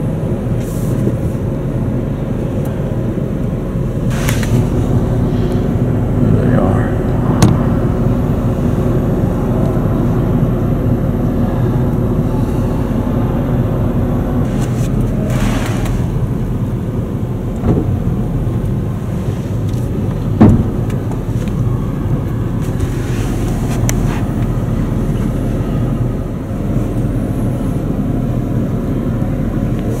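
Car engine running steadily, heard from inside the cabin as a constant low hum, with a few scattered sharp knocks and thumps.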